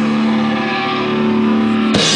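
Rock band's electric guitar and bass holding a final chord that rings out steadily, with a cymbal wash above it and no drum beat.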